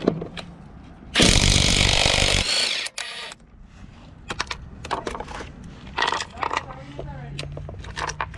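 Cordless brushless half-inch impact wrench hammering for about a second to break a lug nut loose, then spinning it off briefly. Afterwards a few sharp metallic clinks as the lug nuts and socket are handled on the pavement.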